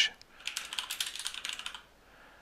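Typing on a computer keyboard: a quick run of keystrokes that stops shortly before the end.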